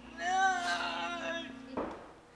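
A voice calling out one long, drawn-out "Noooooo" that wavers in pitch, followed by a short knock near the end.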